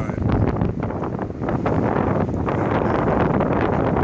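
Wind buffeting the microphone: a loud, steady rush of noise, heaviest in the low end, with many small crackles and pops running through it.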